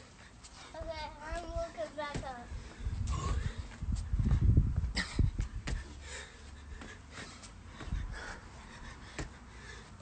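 Panting and thuds from a man doing burpees, with a loud low rumble on the microphone about three to five seconds in. A short, high, wavering vocal cry comes about a second in.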